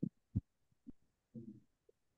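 Near silence on a video-call line, with a short low thump about a third of a second in, a faint click near one second and a brief faint murmur of a voice about halfway through.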